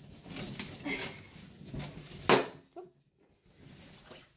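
Plastic wrap stretched across a doorway rustling and crinkling as it is pushed from behind, with one loud sharp crack a little past two seconds in, after which it goes nearly silent for about a second.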